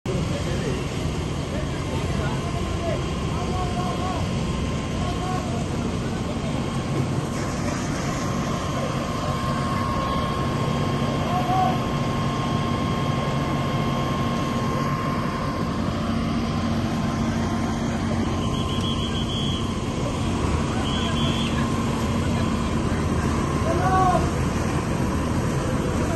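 Steady rumble of idling vehicle engines with a constant hum, and scattered voices in the background.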